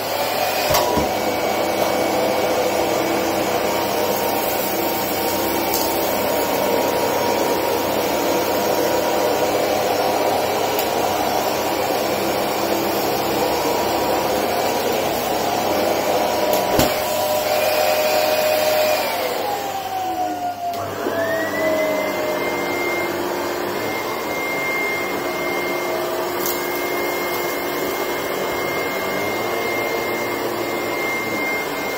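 A Dyson ball upright vacuum cleaner running on a carpet, picking up spilled powder. About twenty seconds in its motor winds down with a falling whine, and an old AEG vacuum starts up, its whine rising and settling to a steady high pitch as it cleans the carpet.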